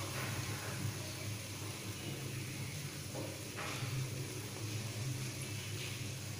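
Pepper rasam frothing at a simmer in an aluminium pot: a faint, even hiss of bubbling over a low, steady hum.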